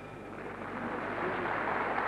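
Circus audience applauding, the applause swelling from about half a second in and growing louder.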